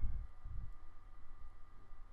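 Quiet background: a faint low rumble, with a couple of soft low thumps in the first second.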